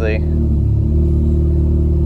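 Mazda RX-8's two-rotor Renesis rotary engine idling steadily at about 1,000 rpm, heard from inside the cabin.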